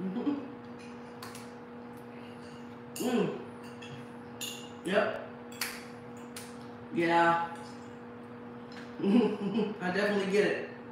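A metal fork clinking and scraping on a ceramic plate as food is cut on it, the clicks sharp and briefly ringing. Between them come several short wordless vocal sounds, at about three, five and seven seconds and again near the end. A steady low electrical hum runs underneath.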